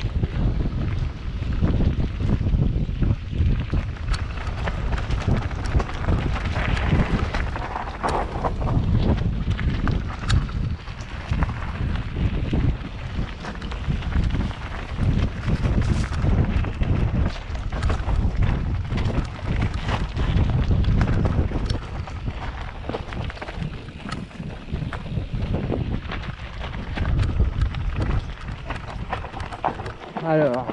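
Wind buffeting the microphone of a camera on an enduro mountain bike during a fast run down a dirt trail, with a loud, uneven rumble and scattered sharp knocks and rattles from the bike over the ground.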